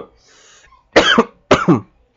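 A man coughs twice into his hand, two short coughs about half a second apart, starting about a second in.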